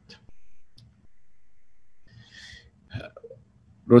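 A male lecturer's low, murmured hesitation sounds during a pause in his talk, followed by a short breath and a mouth click just before he speaks again.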